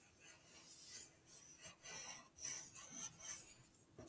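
Wooden pencil scratching faintly across paper in a series of short strokes, drawing curved petal outlines.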